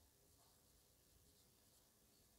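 Near silence with the faint sound of a marker pen writing on a whiteboard.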